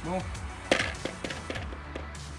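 Sharp taps from a plastic powder shaker being shaken over a plastic bowl, the loudest a little past a third of the way in and a smaller one near the end, over background music.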